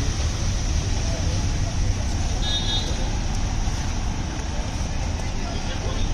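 Steady low rumble of street traffic, with a short high-pitched beep about two and a half seconds in.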